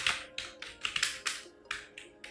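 Keys on a computer keyboard being typed: a quick, uneven run of sharp clicks, several a second, as a password is entered.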